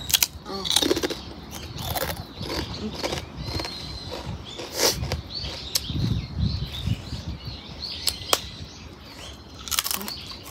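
Crisp grilled rice paper (bánh tráng nướng) being bitten and chewed: sharp crunches every second or two, with softer chewing between them.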